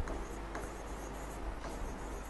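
Faint scratching and a few light taps of a stylus writing on an interactive touchscreen display, over a steady low hum.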